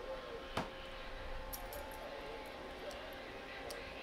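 A sharp click about half a second in and a few fainter ticks later, from the scan-width rotary knob of an HP 8553B spectrum analyzer being handled. Under them runs a faint steady hum with thin whining tones from the running bench test equipment.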